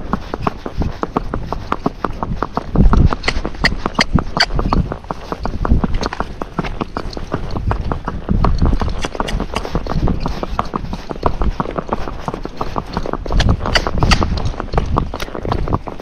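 Hooves of a Missouri Fox Trotter striking a paved road in a steady, rapid run of hoofbeats: the footfall of the horse being asked for a saddle gait or rack going downhill.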